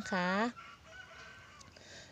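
A rooster crowing faintly, held for about a second and a half.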